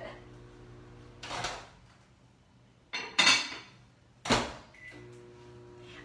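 Microwave oven door opened, a lid clattered onto the dish inside, and the door shut with a thud about four seconds in; a short beep follows and the microwave's steady hum starts up again.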